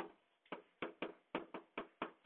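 A stylus tapping and clicking on a writing surface as numbers are hand-written in digital ink: about seven short, sharp taps, a few a second.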